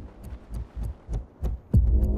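Trailer sound design: a run of about six low, deep thuds that come quicker and quicker. It ends in a loud low hit near the end.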